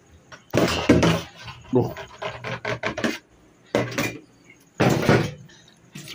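Plastic washing basins knocking and clattering against a stainless steel sink as they are handled for washing up, in several bursts of quick knocks, the loudest about a second in.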